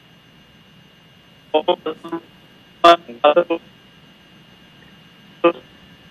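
A telephone line carrying a faint steady tone over hiss, broken by a few short bursts of a man's voice coming over the line, about one and a half, three and five and a half seconds in.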